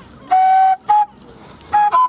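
A hand-held flute playing short separate notes: a held note about a third of a second in, a brief higher one just before a pause, then notes stepping up in pitch near the end.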